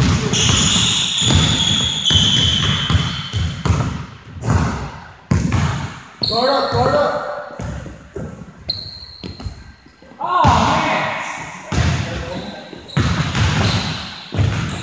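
A basketball dribbled and bouncing on a hardwood gym floor, with repeated knocks echoing in a large hall. High sneaker squeaks come in the first few seconds and again around the middle, and players' voices call out twice.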